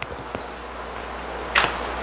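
Pause in a lecture-room recording: a steady low hum of room noise, a light click right at the start and a short rush of noise, like a breath, about a second and a half in.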